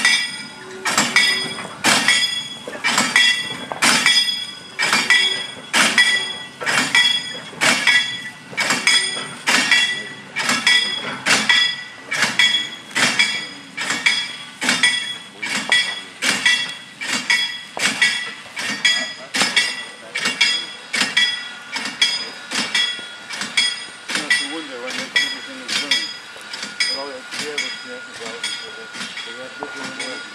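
A rake of railway coal wagons and a brake van moving slowly, with a metallic ringing clink about once a second that fades as the wagons move away.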